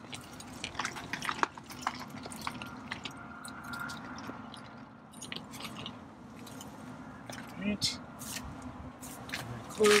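Gray water draining from an RV's gray tank through a flexible sewer hose into a dump-station drain, a steady flow with scattered knocks and clicks as the hose is handled.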